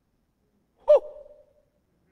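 A single shouted 'Woo!', a short excited whoop of approval that starts abruptly about a second in and dies away within half a second.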